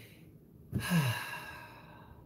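A man's sigh about a second in: a short voiced breath out that falls in pitch and trails off.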